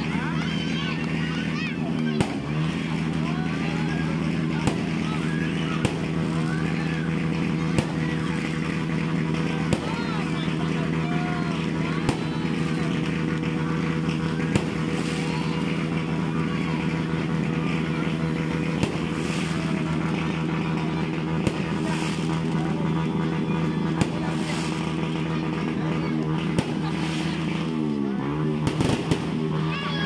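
New Year fireworks going off, with sharp bangs every couple of seconds over a steady low drone and a background of voices.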